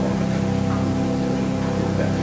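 Church organ holding a steady sustained chord.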